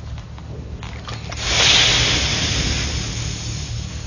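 Fabric rustling as it is folded into creases: one swishing rustle that starts about a second in and fades over the next two seconds, over a low steady hum.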